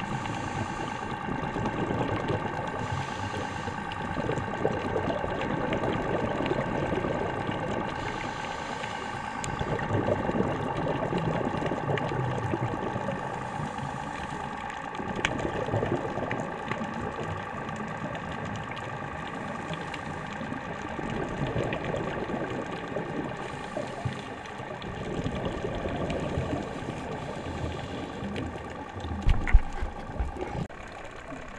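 Underwater sound: a steady motor whine of several tones, a boat engine heard through the water. Under it, the diver's regulator breathing and exhaled bubbles swell and fade every few seconds.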